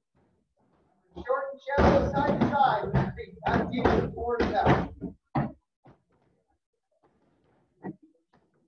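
Kicks thudding against standing heavy punching bags: a quick run of hits with voices mixed in over about four seconds, then a few single thuds, the last one near the end.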